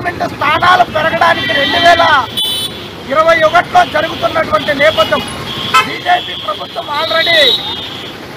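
A man making a speech in Telugu into a microphone, with road traffic behind him and a vehicle horn sounding for about two seconds in the second half.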